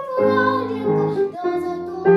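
Children's voices singing a Soviet wartime song over instrumental accompaniment, in held, melodic notes.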